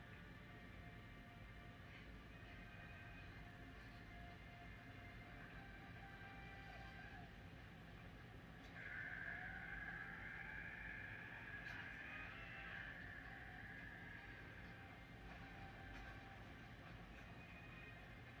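Near silence: faint room hum, with a faint higher tone that comes in about nine seconds in and fades over the next few seconds.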